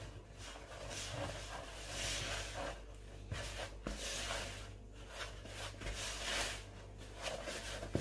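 Spatula stirring flour into a stiff butter-and-sugar cookie dough in a plastic mixing bowl: soft, irregular scraping and rubbing that comes and goes with the strokes.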